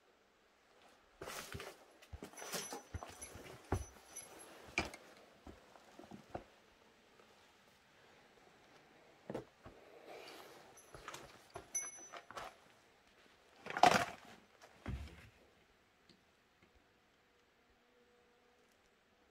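Irregular knocks, scrapes and rustles of someone moving about and handling things in an old wooden house. They come in two busy stretches, with the loudest knock about fourteen seconds in.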